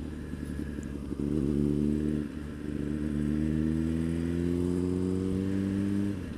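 Suzuki GSX-R motorcycle engine under way: the revs rise about a second in, dip briefly at a gear change, then the engine pulls steadily with its pitch slowly rising until the throttle is eased near the end.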